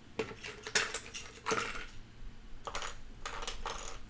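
Loose plastic LEGO pieces clicking and rattling as a hand rummages through them, in an irregular string of short clatters.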